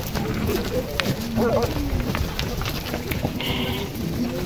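Goats bleating in short calls, with a few clicks of hooves on stones.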